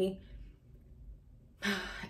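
A woman's speaking voice trailing off at the end of a word, then a soft exhale and a pause of about a second before she speaks again.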